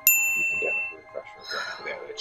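A single bright ding, struck once right at the start and ringing out for about a second before it fades, with faint voices after it.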